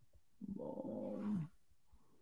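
A man's drawn-out 'hmm', a steady hum about a second long that drops in pitch as it ends.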